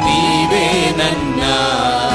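A man singing a slow Kannada Christian worship song into a microphone, his voice gliding and wavering over long held accompaniment chords.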